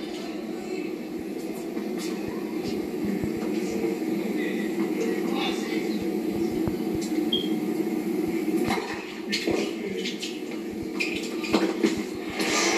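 Tennis broadcast playing from a television speaker in a small room: a steady background hum, with a few sharp racket-on-ball strikes in the last few seconds as the point is played.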